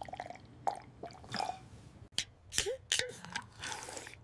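A person gulping down water in quick swallows: a string of short, wet gulps and clicks, louder in the second half.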